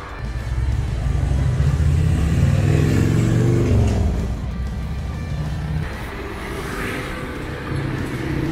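A motor vehicle driving past close by: a low engine rumble that swells for the first few seconds, then drops in pitch and fades as it goes past about four seconds in. Background music plays underneath.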